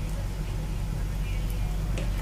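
Pakoras deep-frying in hot oil, with a few faint crackles, over a steady low hum.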